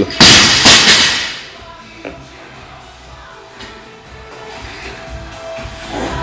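A loaded barbell with rubber bumper plates dropped onto a rubber gym floor, hitting and bouncing several times in the first second, over background music.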